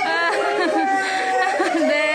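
Several people's voices overlapping in excited chatter.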